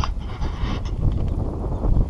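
Wind buffeting the microphone over the low road rumble of a slow-moving ute, with a few brief knocks.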